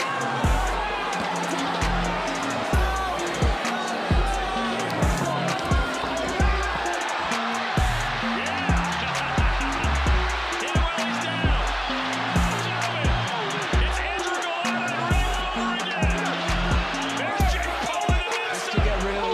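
Background music with a heavy, regular bass beat and a voice over it.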